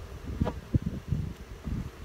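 Wind buffeting the microphone in uneven gusts, with a light knock about half a second in and another just after as a wooden hive frame is set down into its box.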